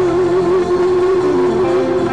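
Live band music: a single long note, held with a slight waver, sounds over the accompaniment and ends near the end.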